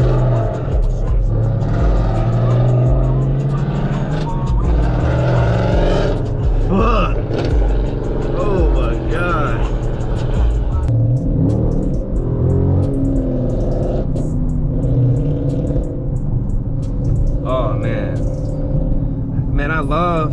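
Music with a heavy, stepping bass line and vocals playing through a car's sound system in the cabin, over the running engine and road noise of a Dodge Charger Scat Pack.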